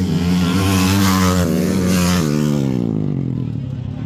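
Motocross dirt bike passing close at speed: its engine is held high for about two seconds, then the pitch drops as the bike goes by and the sound fades away.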